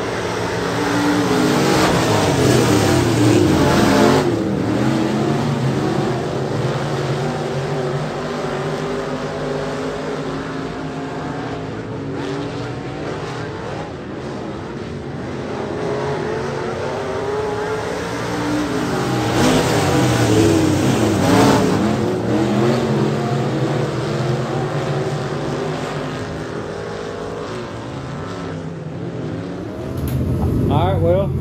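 A field of USRA Limited Modified dirt-track race cars running laps in a heat race, their V8 engines rising and falling in pitch as the pack passes. The pack is loudest twice, a few seconds in and again about two-thirds of the way through.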